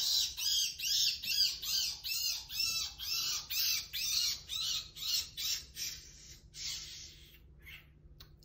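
Live feeder rabbit screaming in distress while it is constricted in the coils of a platinum motley reticulated python. It gives a high-pitched cry about twice a second, and the cries weaken and stop near the end.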